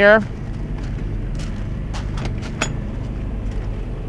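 Steady low drone of the motorhome's 8,000-watt Onan quiet diesel generator running, with a few light footsteps on gravel in the middle.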